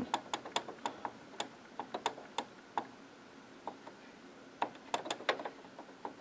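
Control-panel keys of a Brother HL-L2390DW laser printer clicking under repeated quick presses, scrolling through characters to enter a Wi-Fi network key. The clicks come a few tenths of a second apart, pause for about a second and a half midway, then resume.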